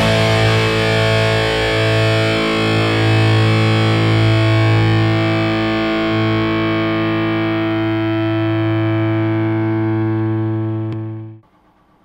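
Distorted electric guitar, driven through a Tube Screamer overdrive, holding a final chord that rings steadily for about eleven seconds, its brightness slowly fading, then cut off sharply near the end.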